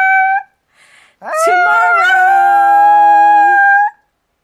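A Chihuahua howling: a long, steady howl ends about half a second in, and after a short pause a second howl rises in and is held for over two seconds before stopping just before the end.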